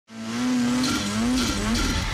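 A snowmobile engine revving at high speed, its pitch dipping and rising about three times with a hiss at each peak.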